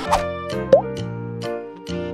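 Background music with evenly spaced notes, about two a second, and a short rising 'bloop' sound effect a little under a second in, the loudest moment.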